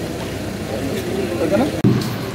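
Several people talking at once over a steady outdoor rumble, with no single voice standing out; it cuts off suddenly near the end, leaving quieter room noise.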